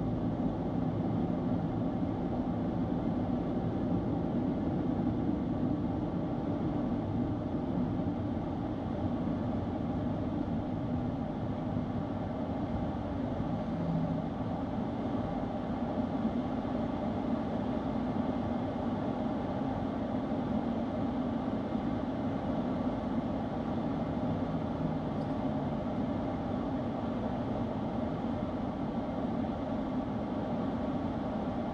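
Steady road noise heard inside a car's cabin on an interstate: a low, even rumble of tyres and engine.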